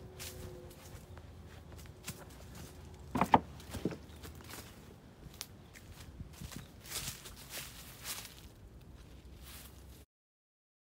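Footsteps crunching through dry leaves and brush while walking, with one louder knock a little over three seconds in.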